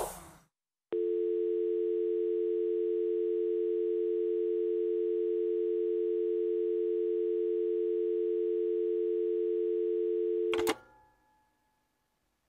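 A telephone dial tone: two steady tones held together for about ten seconds, cut off near the end by a click.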